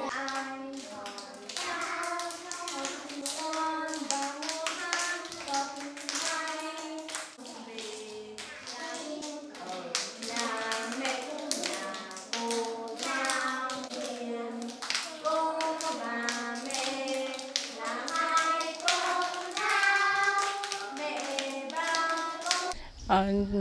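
A class of small children singing a song together while clapping their hands along to it, several claps a second.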